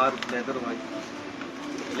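A man's voice in a few short, broken words, followed by a faint low steady tone under quiet shop background noise.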